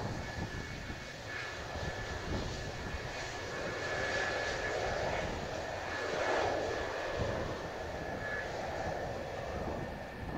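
An F-4EJ Kai Phantom II's twin J79 turbojets run at low power as the fighter taxis past. There is a steady high whine over a jet rush that swells to its loudest about six seconds in, as the tail and exhausts come by. Strong wind rumbles on the microphone underneath.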